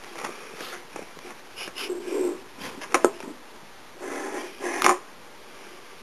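Quiet handling noises from a roll of duct tape being turned over in the hands, with a few soft breathy sounds and two sharp short clicks, about three and five seconds in.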